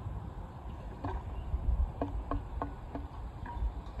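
Rammer ramming the cartridge home in the bore of a 4-pounder field gun: a knock about a second in, then four quick knocks about three a second, each with a brief ring from the barrel. Wind rumbles on the microphone.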